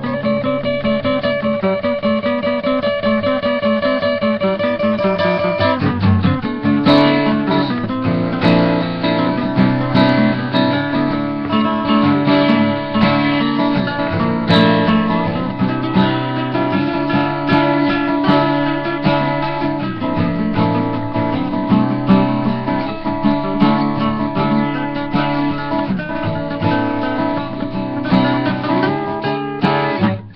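Two acoustic guitars playing a duet together, picked notes over fuller chords; about six seconds in, the playing turns busier with stronger bass notes.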